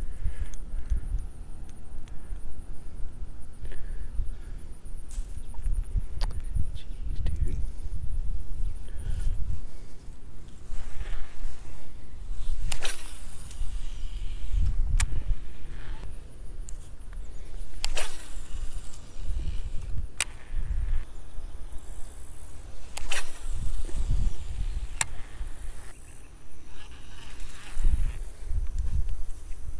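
Wind buffeting the microphone in an uneven low rumble, with about half a dozen sharp clicks scattered through it.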